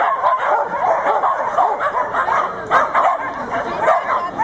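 Dogs barking and yipping without a break, with a sharp yap every half second or so.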